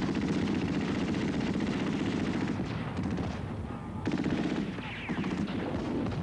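Sustained automatic gunfire, many rapid shots overlapping, easing briefly about three and a half seconds in and again around five seconds before picking up again.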